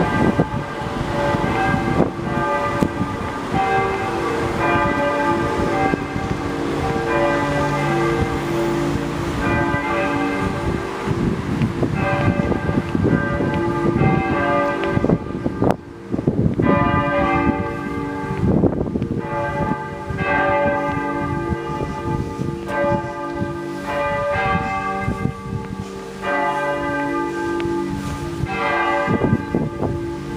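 Several church bells of Telšiai Cathedral ringing together in a continuous peal, their different pitches overlapping and struck again and again.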